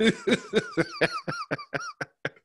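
A man laughing hard in a rapid run of short, high, squeaky pulses, about six a second.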